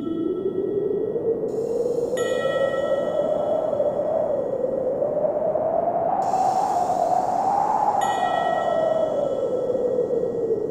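Ambient relaxation music: a wind-like whoosh that slowly rises and falls in pitch, with clear chime-like notes struck about two seconds in and again about eight seconds in, each ringing on.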